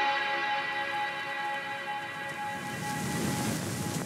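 Background music with held notes, fading out over the first couple of seconds and giving way to a steady hiss of noise near the end.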